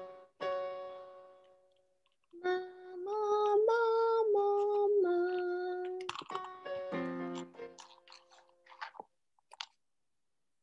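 A piano chord rings and fades, then a voice sings a vocal warm-up, holding a few notes that step up and back down. Another piano chord sounds about seven seconds in.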